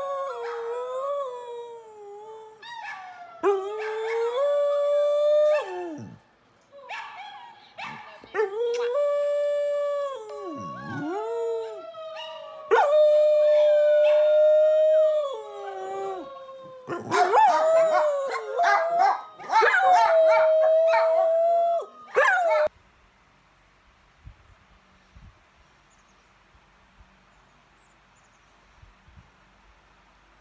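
A dog howling in a run of long, wavering howls that slide up and down in pitch, the last few louder and more ragged. The howling stops abruptly a little over two-thirds of the way through, leaving only faint room noise.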